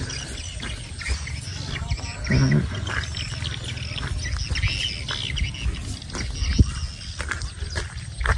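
Scattered faint bird chirps and twitters over a steady low rumble.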